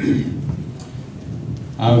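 Microphone handling noise: a low rumbling rub that starts suddenly as a handheld microphone is picked up, then a man starts speaking into it near the end.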